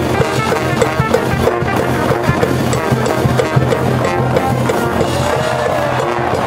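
High school baseball cheering band in the stands: brass playing a fight song over a steady drum beat.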